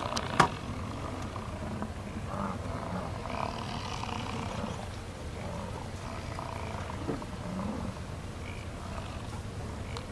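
American bison grunting low now and then over a steady low rumble, with one sharp click about half a second in.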